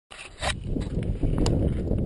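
Low rumble of handling noise and wind on a handlebar- or body-mounted action camera's microphone as a gloved hand works the camera, with two sharp clicks, about half a second and a second and a half in.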